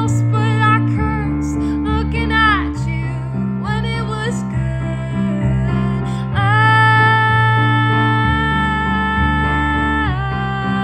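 A young woman's solo singing over steady instrumental chord accompaniment. Her voice slides between notes, then holds one long note from about six seconds in.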